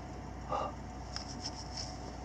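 Faint rubbing and light scratching of a microfiber cloth wiping a small plastic action-camera housing, over a steady low hum.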